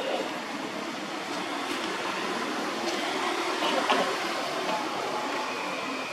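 Steady outdoor background noise, an even hiss with no clear single source, with a few faint short higher sounds about halfway through.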